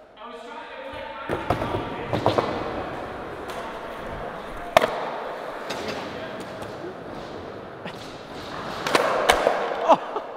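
Skateboard wheels rolling on a smooth skatepark floor as a nollie shove-it is attempted, with sharp clacks and slaps of the board, the sharpest nearly five seconds in and a louder cluster near the end.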